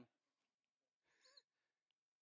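Near silence: quiet room tone, with one faint, brief pitched sound a little after a second in.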